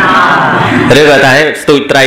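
Only speech: a man talking in Khmer.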